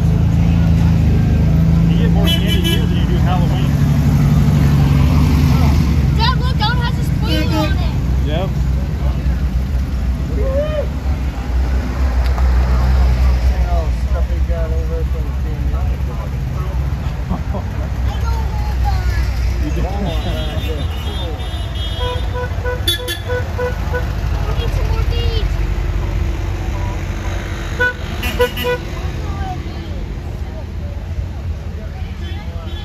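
Vintage Volkswagen Beetles and buses driving slowly past with a steady engine rumble. Horns give short toots several times, with a quick string of beeps about two-thirds of the way through.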